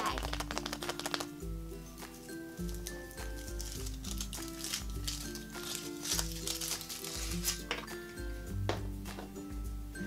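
Background music with a steady bass line, over foil crinkling as a chocolate surprise egg's wrapper is peeled off, in a burst at the start and again through the middle.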